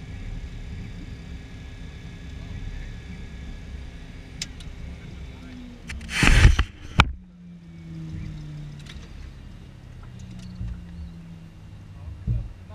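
Cockpit noise of the Cessna Citation V's jet engines at idle: a steady hum with a thin high whine. About six seconds in, there is a loud rustle and knock of the camera being handled and covered, after which the whine is gone and only a lower hum remains.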